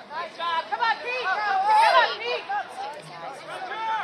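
Several voices at a soccer game shouting and chattering over one another, with no words clear. The loudest calls come about halfway through.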